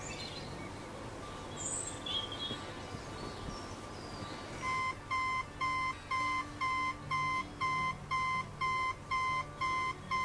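Birds chirping briefly, then about halfway through a digital alarm clock starts beeping: short, evenly spaced electronic beeps, about two and a half a second.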